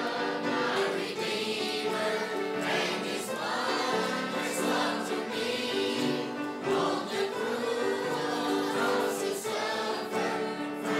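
A small mixed choir of men, women and children singing a gospel hymn, accompanied by an acoustic guitar.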